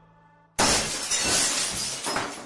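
A glass-shattering sound effect: silence, then about half a second in a sudden crash of breaking glass that tails off over the next second and a half.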